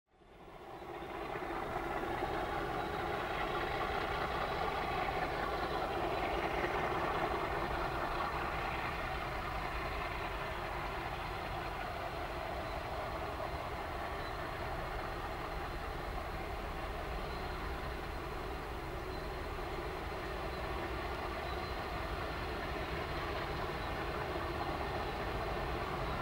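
Diesel engines of two MLW MX627 locomotives running steadily at a distance, a continuous drone of several tones that fades in over the first second or two.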